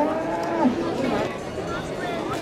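A Camargue bull bellowing, a long drawn-out call that ends about two-thirds of a second in, followed by the murmur of crowd chatter.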